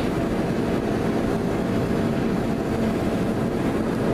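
Steady rush of air from a powder-coating spray booth's extraction fan, with the powder gun spraying a steel bracket.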